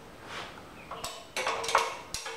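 Steel open-end wrenches clinking against a bolt and the steel track bracket as a 17 mm fastener is worked by hand, with a few light metallic taps and short rings in the second half.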